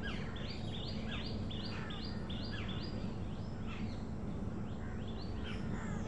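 Small birds calling: a short, high, falling chirp repeated about three times a second, with other scattered bird calls around it, over a steady low hum.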